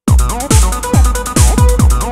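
Techno pattern from a Roland TR-8S drum machine and synthesizers starting abruptly. A deep kick drum with a falling pitch lands on every beat, about two a second, with hi-hats and a synth line over it.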